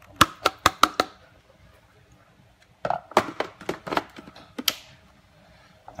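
A glass bowl knocked several times in quick succession against the rim of a stainless steel mixing bowl to shake out shredded slaw, then a second run of knocks and clatter about three seconds in.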